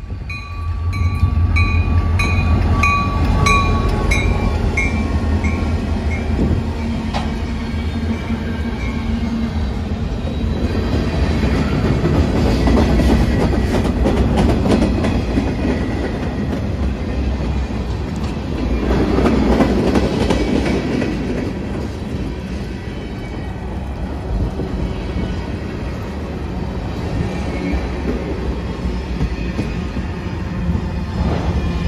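Norfolk Southern freight train passing close by: its EMD SD40-2 and SD60E diesel locomotives go by working at full power with a deep engine rumble, while a bell rings about twice a second and fades out within the first few seconds. Then a long string of freight cars rolls past with steady wheel-on-rail noise and clickety-clack.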